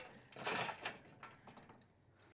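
Metal dirt-bike lockdown stand being handled: a brief faint scrape followed by a few light clicks.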